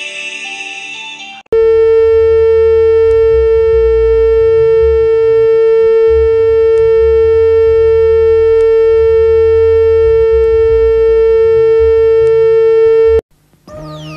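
Television test-card tone: a single loud, steady tone with a low buzz beneath, held for about twelve seconds over colour bars, then cut off suddenly. It follows the last second or so of a channel ident's music.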